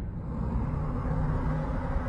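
A low, steady rumble from a film trailer soundtrack, with faint low tones held under it.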